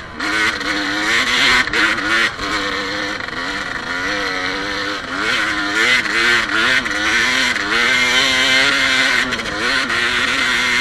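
Enduro dirt bike engine under load, its revs rising and falling over and over as the throttle is worked on a rough climb.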